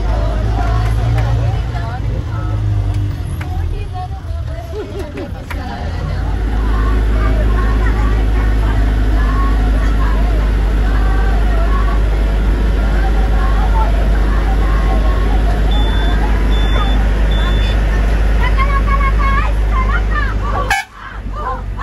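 A bus heard from inside its cabin, its engine and road noise making a loud steady low rumble that grows louder about six seconds in, under the chatter of passengers' voices. Three short faint high beeps come near the end.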